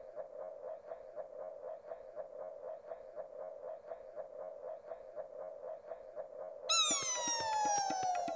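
Cartoon-style electronic soundtrack: a mid-pitched tone pulsing fast and evenly. Near the end a louder sliding sound effect falls steadily in pitch over about two seconds, with a quick run of clicks.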